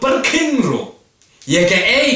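Speech only: a man's voice speaking with rising and falling pitch, pausing briefly about a second in and then going on.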